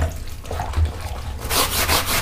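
A brush scrubbing wet, soapy cloth in quick back-and-forth strokes, working dried wall-paint stains out of black trouser fabric. There is a knock at the very start, and the scrubbing gets louder about a second and a half in.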